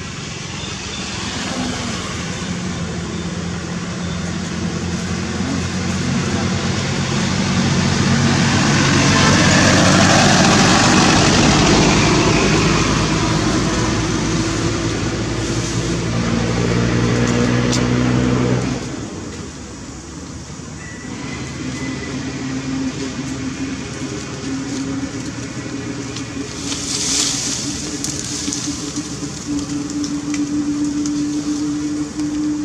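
A motor vehicle engine running with a steady low hum that grows louder toward the middle, then stops abruptly about two-thirds of the way through. A fainter, steady engine hum carries on after it.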